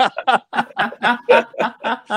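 People laughing over a video call: a steady run of short chuckles, about four or five a second.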